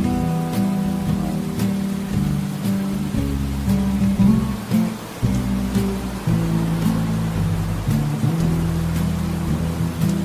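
Gentle background music with plucked guitar and a low bass line, over a soft steady hiss of falling rain.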